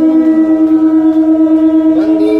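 Conch shell (shankha) blown in one long, steady note during the arati, with a voice faintly heard behind it near the start.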